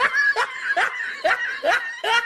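A person laughing in short, rising snickers, about two a second.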